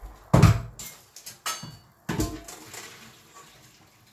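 Kitchen clatter of a saucepan being handled: a loud thump about half a second in, a few lighter knocks and clicks, then another thump just after two seconds.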